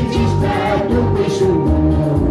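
A small mixed group of men and women singing a Christian hymn together, one voice carried through a microphone and PA. They sing over amplified backing music with a strong, rhythmic bass line.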